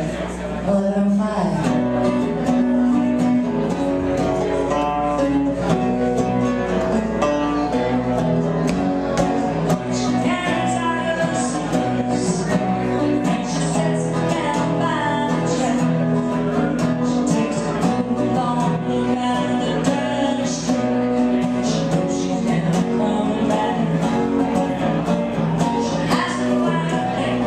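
Live acoustic set: a steel-string acoustic guitar played with a woman singing over it.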